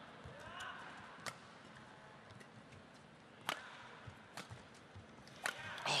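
Badminton racket strings striking a feather shuttlecock during a rally: several sharp cracks, a second or two apart, over a faint hall murmur.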